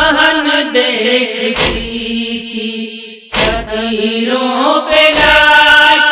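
Nauha, a Shia Muharram lament, chanted by voices in a slow recitation, with a sharp thump about every two seconds, three times.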